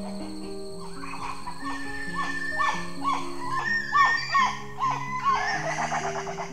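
Soft background music of sustained, slowly changing notes, over a series of short rising-and-falling calls from Geoffroy's spider monkeys, about two a second, starting about a second in and growing busier toward the end.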